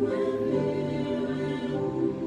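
Slow worship music with sustained choir-like voices holding long chords; the chord shifts at the start and again near the end.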